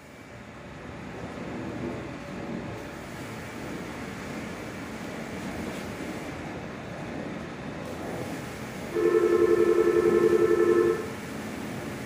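Disney Resort Line monorail running with a steady rumble, then a loud warbling two-tone electronic signal sounds for about two seconds near the end.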